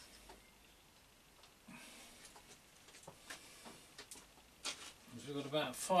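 Faint, scattered clicks and light knocks of small metal parts being handled at a mill drill, then a man's voice starts near the end.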